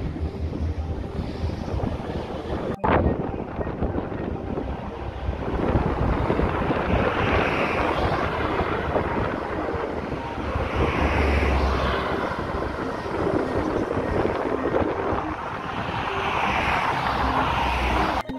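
Road traffic: cars passing one after another on a multi-lane road, their tyre and engine noise swelling and fading several times. Wind rumbles on the microphone underneath.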